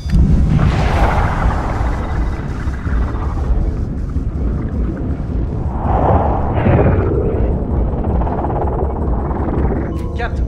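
Film sound design for submarine evasion decoys launching underwater: a sudden deep rushing whoosh and rumble at the start, and a second surge about six seconds in, mixed with dramatic score.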